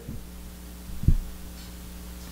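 Steady electrical hum on the pulpit microphone's line, with a single low thump about a second in.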